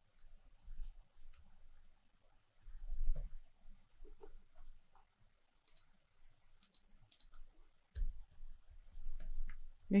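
Computer keyboard typing: irregular key clicks in short runs with pauses. There are two duller low knocks, about three seconds in and near the end.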